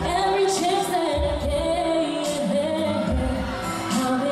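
A woman sings a pop song live into a handheld microphone over an amplified backing track with a steady bass beat and cymbal strokes.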